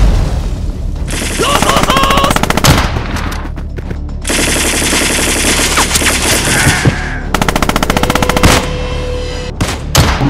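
Battle sound effects of machine-gun fire: three long bursts of rapid shots, the last one shorter and ending about eight and a half seconds in.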